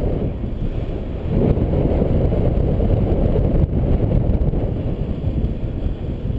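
Wind rushing over the microphone of a paraglider in free flight: a steady low rumble with no engine.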